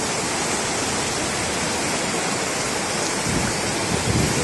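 Muddy floodwater rushing steadily through a breach in an earthen embankment, churning white water from a river in spate breaking through the broken levee.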